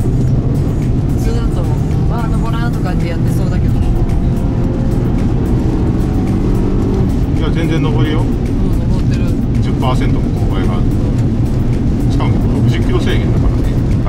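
Inside the cabin of a Toyota RAV4 G'Z package, its 2.0-litre four-cylinder petrol engine drones steadily under load while climbing a steep 10% grade, with tyre and road noise from the rain-soaked road.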